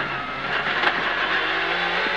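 Renault Clio S1600 rally car's naturally aspirated 1.6-litre four-cylinder engine running hard, heard from inside the cabin. It is loud and steady, and its pitch rises a little over a second in.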